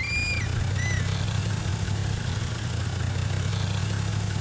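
Four-wheel-drive jeep's engine running steadily as it drives along a grassy track, heard from inside the cab. A few short, high chirps sound in the first second.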